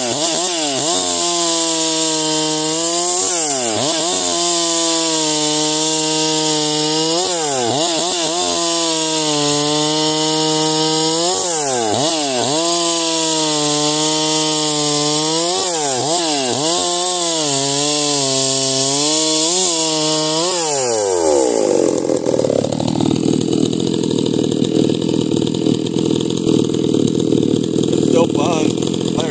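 Freshly built, ported Farmertec MS660 two-stroke chainsaw with a 54 mm bore, on its first break-in cuts, running at high revs through a log. The revs dip briefly and recover every few seconds, and about 21 seconds in the engine falls off the high revs.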